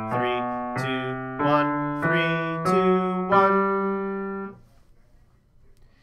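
Piano playing the ascending half of a left-hand G major scale at a steady tempo: six even notes, the last, the G below middle C, held for about two seconds before it dies away.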